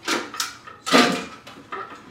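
The top housing of a light fixture being handled and set down onto its reflector dome: two short clattering scrapes, the louder about a second in.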